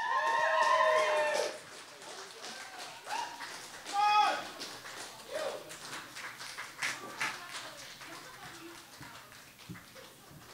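Small audience whooping and cheering with scattered clapping. There is a long, loud whoop at the start and another about four seconds in, and the clapping dies away toward the end.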